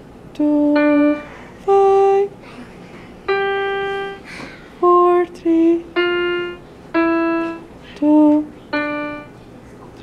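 Roll-up electronic keyboard played one note at a time: a slow, simple tune of about nine notes, each held briefly and then released before the next.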